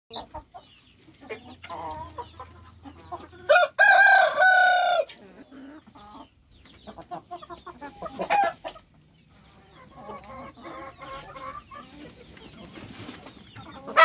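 Desi rooster crowing once, loud and steady in pitch for about a second and a half. Soft, short clucking from the chickens comes before and after, with a shorter call about eight seconds in.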